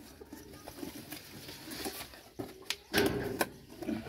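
Rustling, scraping and scattered clicks from a ventilated cardboard chicken carrier being handled and opened on the ground, with a louder scuffle about three seconds in.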